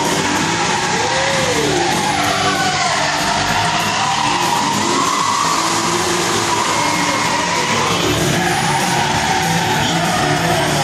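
Stunt cars drifting and spinning on tarmac, tyres squealing in long wavering screeches with engines revving, over music.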